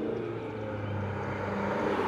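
A passing motor vehicle's engine, growing steadily louder as it approaches.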